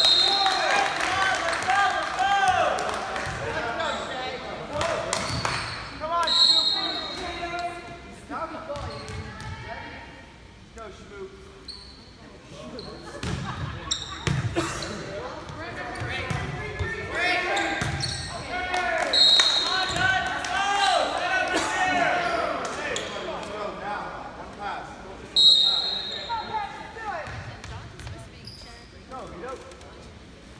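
Volleyball being played in an echoing gymnasium: ball hits and impacts, players and spectators shouting and cheering, and a referee's whistle blowing four short blasts.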